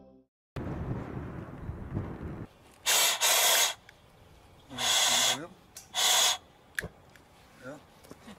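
Propane burner wand hissing in three loud short bursts about a second apart as gas is let through the nozzle, with a sharp click near the end. A low rumble comes before the bursts.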